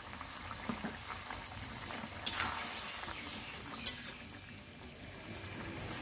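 Chicken and capsicum curry bubbling as it simmers in a metal kadai, with a metal spatula clinking against the pan twice, a little after two seconds in and again near four seconds.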